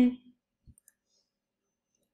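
The end of a spoken word, then a single soft computer-mouse click about two-thirds of a second in, followed by near silence.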